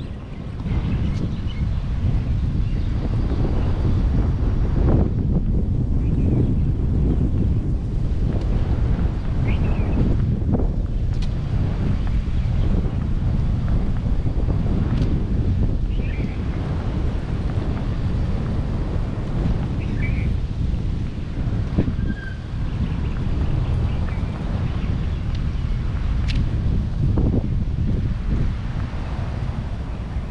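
Wind buffeting the camera's microphone during a walk, a steady low rumble that swells and eases with the gusts.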